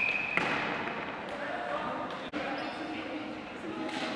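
A referee's whistle, one steady shrill blast that cuts off about half a second in, stopping play. After it, players' voices and scattered knocks of sticks and ball carry through a large gymnasium.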